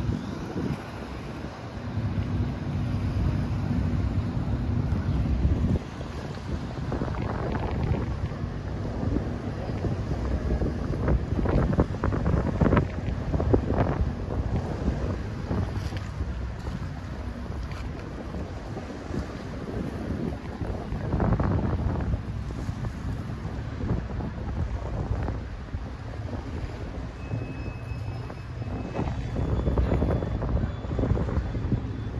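Wind buffeting the microphone over the low, steady drone of a passing riverboat's engine, with river water washing against the foreshore.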